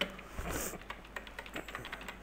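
Typing on a computer keyboard: a run of light, irregularly spaced keystrokes as a command line is typed.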